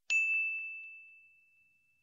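A single high, bell-like chime struck once, ringing on one pitch and fading away over about a second and a half, with a couple of faint ticks just after the strike.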